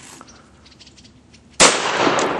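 A single gunshot about a second and a half in, its report trailing on after the sharp crack.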